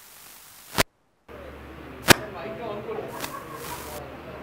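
Sound-system or microphone feed switching on: a sharp click, a moment of dead silence, then a steady low electrical hum with faint murmured voices and two more sharp clicks.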